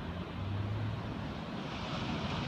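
Wind on the microphone over a steady rush of surf breaking on the beach below.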